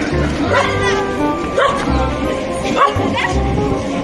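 Background music with a steady beat, with a dog barking a few times over it.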